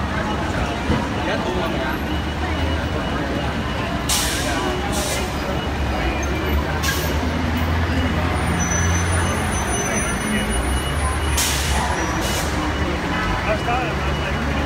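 Curbside road traffic: a steady low engine rumble from idling vehicles under a crowd's chatter, with several short sharp hisses, twice in close pairs.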